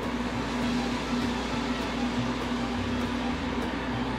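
Red salsa sizzling steadily in hot oil in a small frying pan, over the even hum of an induction hob.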